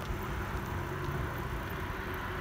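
Steady rushing wind on the microphone and tyre rolling noise while riding fast downhill along an asphalt path.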